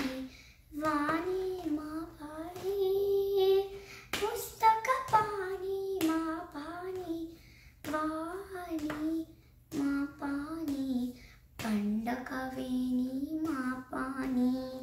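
A young girl singing a Sanskrit devotional hymn to Saraswati unaccompanied, in short melodic phrases with brief pauses between them. A couple of sharp clicks come about five seconds in.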